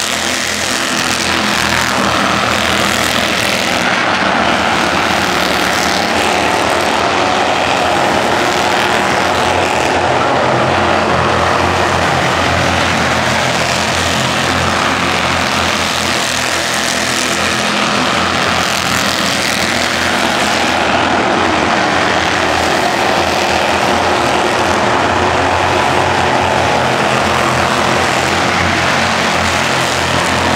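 A field of Bandolero race cars running at speed around a short oval, their small single-cylinder Briggs & Stratton engines buzzing together without a break. The sound swells and fades as the cars come past, about every ten seconds.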